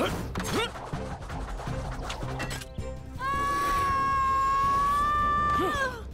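Cartoon action soundtrack: music with quick sliding sound effects, then a long high-pitched tone held for about two and a half seconds that bends down just before it stops.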